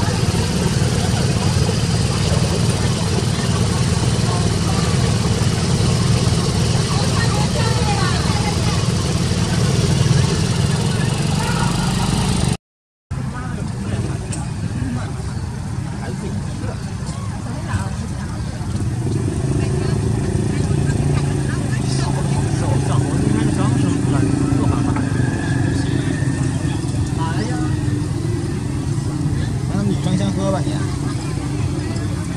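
A steady, engine-like low hum with people's voices mixed in the background, cutting out completely for a moment about twelve seconds in.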